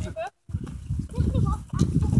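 Indistinct talk from people walking in a group, over a low rumbling noise that starts about half a second in.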